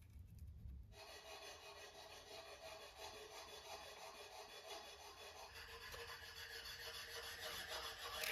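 Clay mortar being scraped and spread with a small metal spatula against ceramic stove tiles: a soft, steady rubbing scrape that starts about a second in and grows louder toward the end.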